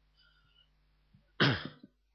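A man coughs once, sharply, about one and a half seconds in, with a short catch after it.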